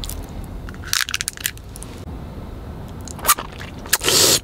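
Crinkly plastic candy wrapper being handled and torn open, in clusters of short crackles about a second in and again briefly near the end.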